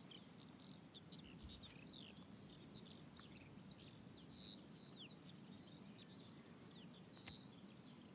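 Faint outdoor ambience of birds chirping: many short, high chirps scattered over a low background hiss.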